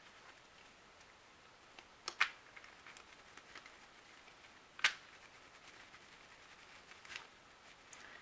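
Playing cards being handled in the hand: a close pair of sharp card clicks about two seconds in, a louder single click near five seconds, and a fainter one near seven, over quiet room tone.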